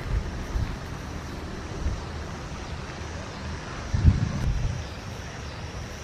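Wind buffeting the camera microphone: an uneven low rumble, with a stronger gust about four seconds in.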